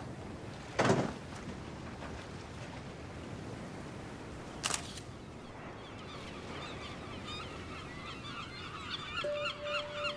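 Seagulls calling, many short cries overlapping from about six seconds in. Before them come a short burst about a second in and a single sharp click near the middle, and a faint steady tone starts near the end.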